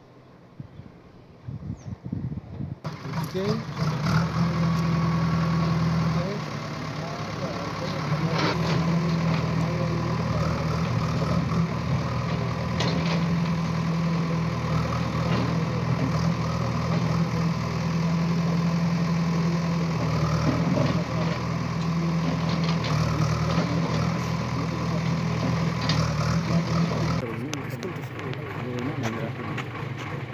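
Diesel engine of a backhoe loader running steadily at a low hum, with a few sharp knocks over it.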